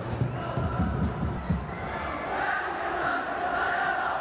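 Football stadium crowd: a steady din of many voices, swelling into sustained chanting a little past halfway.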